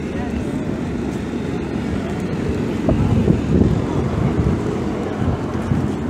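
Wind buffeting the phone's microphone as a loud, uneven rumble that swells about three seconds in, over the chatter of a crowd.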